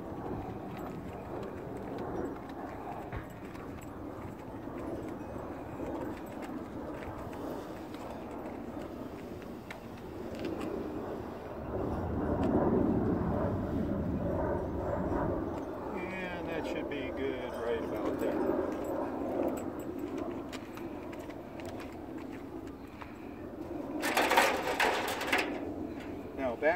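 A fabric trailer cover rustling and dragging as it is pulled across the roof of a small travel trailer. There is a louder stretch in the middle and a short, sharp swish near the end.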